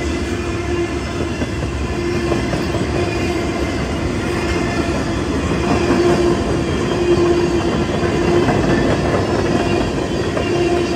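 Freight train cars (tank cars, covered coil cars and boxcars) rolling past at close range: a steady, loud noise of steel wheels running over the rails. A steady-pitched wheel squeal comes and goes several times.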